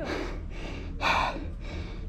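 A person breathing hard close to the microphone: two heavy breaths about a second apart.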